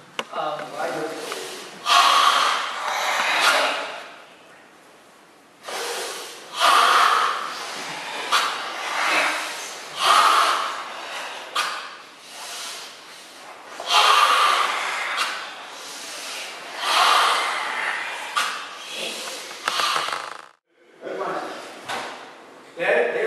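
Forceful, hissing karate breathing of the Tensho kata: long, noisy breaths drawn and pushed out under tension, each lasting a second or more and coming every three to four seconds.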